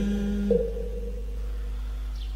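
The tail of a long held note of Vietnamese devotional verse chanting, ending about half a second in. After it comes a pause filled only by a low steady hum.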